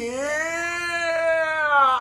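A young man's long, drawn-out yell held on one pitch, sliding slightly and dipping near the end before it cuts off abruptly.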